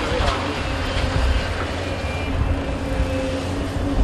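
Doosan hydraulic excavator running steadily, with a low engine rumble and a faint steady whine, as its bucket empties a load of soil and swings up.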